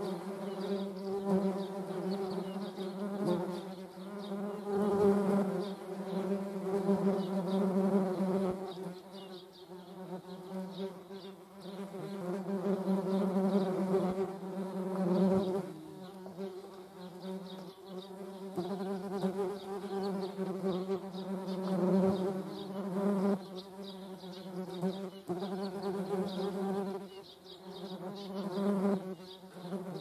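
Wasps buzzing in flight close by: a low, steady wingbeat buzz that swells and fades as they come and go.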